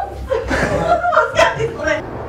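People talking in short excited phrases, with chuckling.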